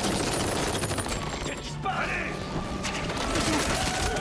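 Rapid volleys of automatic gunfire in bursts, over a dramatic music score with voices in the mix. There is a short lull about two seconds in before the firing resumes.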